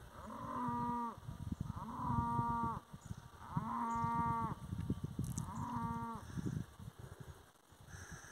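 A cow mooing four times, each call about a second long and dropping in pitch at its end: a cow calling for her calf, which has run off.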